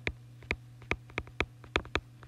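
Light clicks, about seven in two seconds at uneven spacing, over a faint steady hum.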